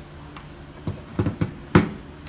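A hard black plastic accessory being handled and set down on a wooden table: four short knocks in the second half, the last the loudest.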